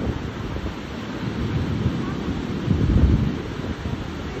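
Wind buffeting the microphone over the steady wash of ocean surf breaking on the beach, louder for a moment about three seconds in.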